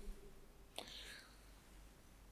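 Near silence, with a faint mouth click and a short breath about a second in.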